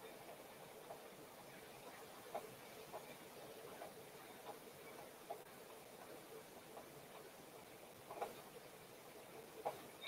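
Near silence: room tone with a few faint, short clicks scattered through it.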